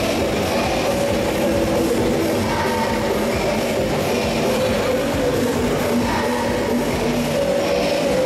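Live music from a children's group singing a fusion song with accompaniment, dense and steady throughout.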